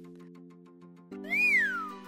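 Background cartoon music, with a whistling sound effect entering about a second in. The whistle slides up in pitch, falls, and starts rising again.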